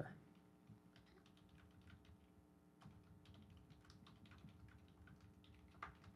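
Faint typing on a computer keyboard: light, irregular key clicks over a faint steady hum.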